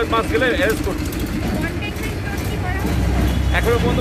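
Street traffic noise under people's voices, with a low engine rumble that swells loudest about three seconds in.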